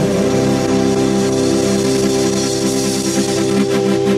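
A live rock band plays an instrumental passage with no singing: a sustained chord rings over a steady low note. A fast, evenly pulsing rhythm comes in near the end.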